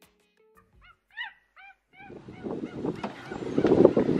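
A quick series of about six short honking calls, each rising and falling in pitch. From about halfway through, outdoor background noise comes in.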